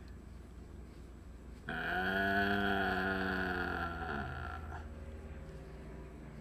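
A man's long, drawn-out hesitation sound, a held "uhhh" while thinking, lasting about two and a half seconds from near two seconds in and dropping slightly in pitch as it trails off.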